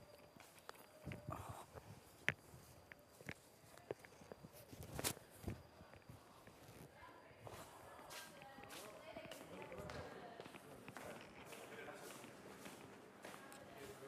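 Faint footsteps and a few irregular knocks, mostly in the first half, with faint murmured voices in the background later on.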